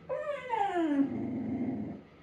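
A small dog whining in two falling cries: a short one at the start, then a longer one that slides down in pitch and stops just before the end.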